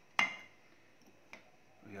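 A single sharp knock of a utensil against a salad bowl, ringing briefly, then a faint click a little over a second later.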